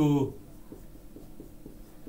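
Marker pen writing on a whiteboard, a series of faint short strokes.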